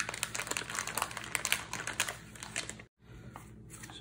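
Plastic bacon packaging crinkling as a slab of bacon is pulled out of it, a quick run of small crackles that cuts off abruptly about three seconds in.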